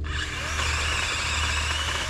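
DeWalt 20V battery pole saw running with its chain cutting into a pear branch: a harsh rasp starts abruptly and stops suddenly after about two seconds, over the steady hum of the motor.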